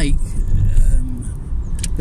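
Car cabin noise from a moving car, heard from inside: a steady low road and engine rumble. A short low hum comes about a second in, and a couple of sharp clicks come near the end.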